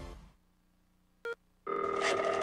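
A music jingle fades out, and after a short pause comes a single brief electronic beep. Then, shortly before the end, a phone ringtone starts ringing loudly in steady tones, as for an incoming call.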